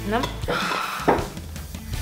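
A hand rummaging among folded paper slips in a plastic bucket and drawing one out, with a short knock about a second in. Brief voice sounds, including a spoken "no", come in the first half.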